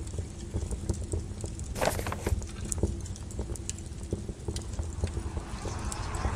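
Intro sound effect: irregular crackles and sharp clicks over a steady low rumble, with a denser cluster about two seconds in and a rushing swell near the end.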